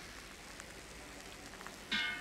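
Faint, steady sizzle of a fried egg in a hot metal ladle, with a few small crackles in the middle. A voice begins right at the end.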